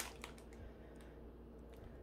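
Near-quiet room with a steady low hum and a few faint clicks and rustles of a cellophane-wrapped pack of sticker boxes being handled.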